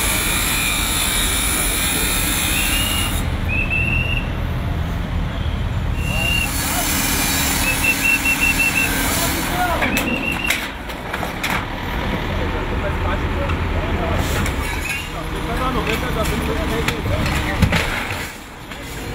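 Demolition of sheet-metal kiosks. An angle grinder cuts steel in the first few seconds and again briefly a few seconds later, over a diesel excavator running. In the second half come metal clanks and knocks as panels are pulled apart, with voices.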